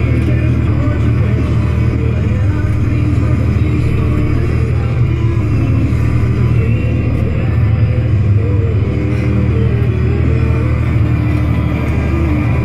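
Steady low drone of a John Deere 7200R tractor engine heard from inside the cab, with music playing over it.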